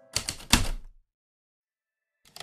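Two sharp typewriter key strikes about a third of a second apart, the second louder and heavier.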